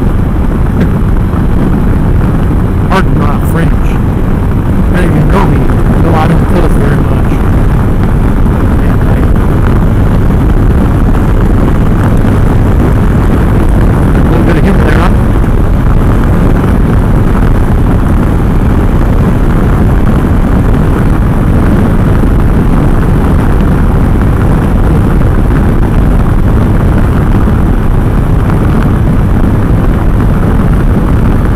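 Can-Am Spyder F3 cruising at highway speed: a loud, steady rumble of engine and wind noise. A few brief voice-like sounds come through in the first several seconds and again about fifteen seconds in.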